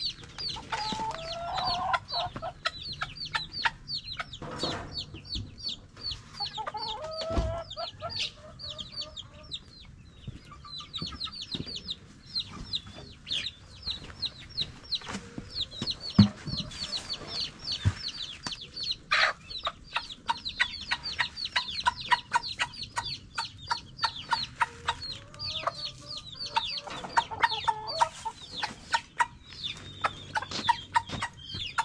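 A flock of native chickens feeding: chicks peeping in rapid high chirps throughout, with hens clucking in short bouts near the start, about a quarter of the way in and near the end. A few sharp knocks stand out, the loudest about halfway through.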